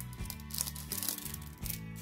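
Clear plastic sleeve around an enamel pin on its backing card crinkling in short bursts as it is handled and opened, over background music.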